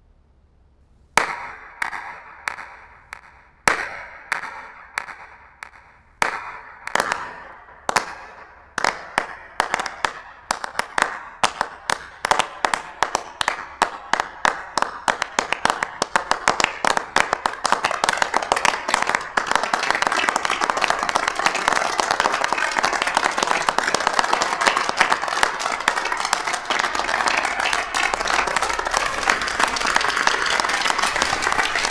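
A slow clap: single, echoing hand claps about a second apart, starting about a second in, that come faster as more people join until they merge into full audience applause.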